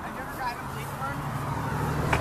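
Faint voices speaking in short snatches, over a low steady hum that comes in and grows slowly louder through the second half.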